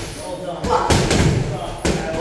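Boxing gloves punching focus mitts, sharp smacks in a large echoing gym: a quick pair of strikes about two-thirds of a second in, then another near the end, with voices in the background.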